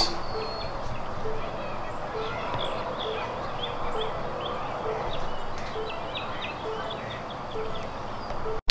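Outdoor ambience: small birds chirping in short repeated calls over a steady background hiss, with a faint low note repeating about twice a second.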